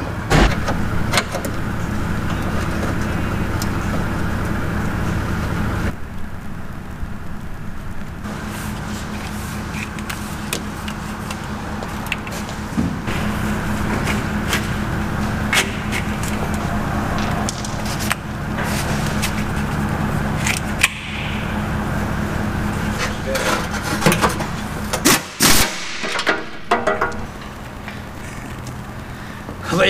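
Workshop sound under a vehicle on a hoist: a steady low hum with scattered clicks, clinks and knocks of hand tools and fasteners on the truck's metal underside. A quieter patch comes about six seconds in, and a cluster of sharper knocks near the end.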